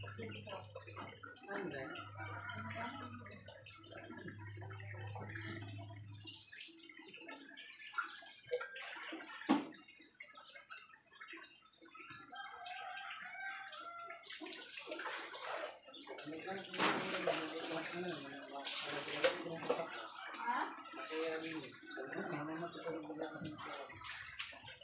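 Water sloshing and splashing as laundry is washed, with people talking in the background. A steady low hum runs for the first six seconds and then stops, and the splashing grows louder in the second half.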